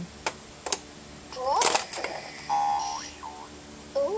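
A plastic ball dropped into a LeapFrog Color Mixer toy truck, with a couple of sharp clicks. The toy then plays its electronic sound effects: sliding tones, a short held beep and more sliding tones.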